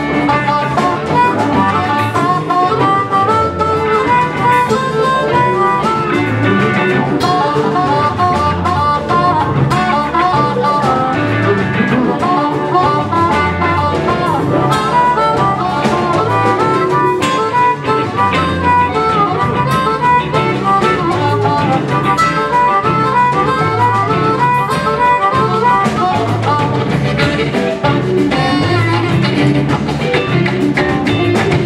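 Live blues band playing, with an amplified harmonica taking a solo of short, quick notes over electric guitars, bass and drums.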